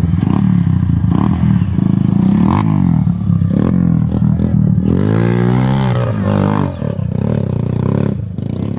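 Trail motorcycle engine running steadily, with a rev that changes pitch about five to six seconds in.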